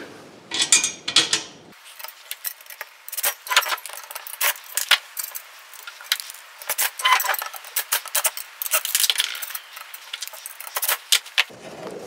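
Small steel nuts and bolts being handled and fitted on a swivel stool's chrome frame and seat plate, making a run of irregular light metallic clinks and clicks.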